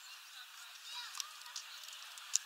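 Small birds at a sunflower-seed feeder: a few light, sharp clicks of seeds being handled and faint short chirping calls, over a steady hiss.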